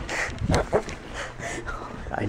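A person's breathy, stifled laughter in short irregular bursts.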